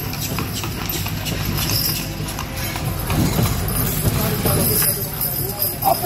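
Hooves of the carriage's draught animal clip-clopping at a walk on the paved street, amid background voices and music.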